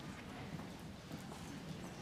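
Scattered footsteps and light knocks on a hard stage floor, over a low murmur of audience chatter.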